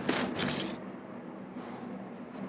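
Handling noise as the camera is set down on the floor: close rustling and knocks against the microphone for under a second. Then quiet room tone with a faint steady hum and a soft tick.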